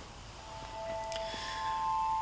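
A synthesized shimmering sound effect for an animated glowing spark: a few steady, pure chime-like tones come in one after another from about half a second in and grow louder, with a faint high sparkle above them.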